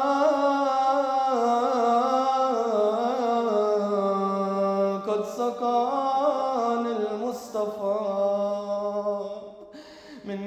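A man's voice chanting a mourning elegy in a slow, wavering melody with long held notes, trailing off near the end.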